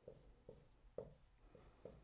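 Dry-erase marker writing on a whiteboard: faint short strokes and taps, about five in two seconds.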